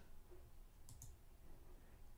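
Near silence, with two faint computer-mouse clicks in quick succession about a second in.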